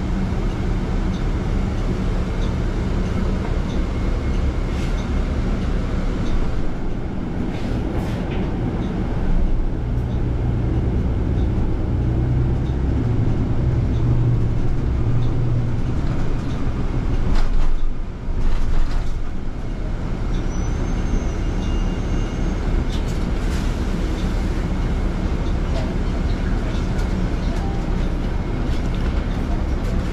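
Interior of a 2021 Nova Bus LFS hybrid city bus in motion: a steady low rumble of the drivetrain and road noise, with a stronger low hum for several seconds around the middle. A few knocks and rattles come through, the clearest about eight seconds in and again near eighteen seconds.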